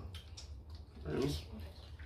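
Eating sounds at the table: a few soft clicks and mouth smacks as boiled seafood is pulled apart and chewed, with a short voiced murmur about a second in, over a steady low hum.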